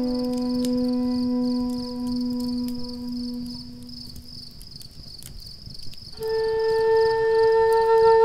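Native American flute holding a long low note that fades away, then after a short pause a higher note begins about six seconds in and is held. A campfire crackles underneath.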